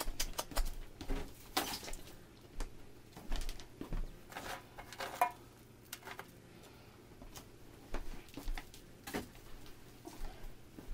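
Salt crust being scraped and brushed off a roast prime rib in a stainless steel pan, with irregular taps, scrapes and pattering of salt crumbs on the metal, busiest in the first two seconds.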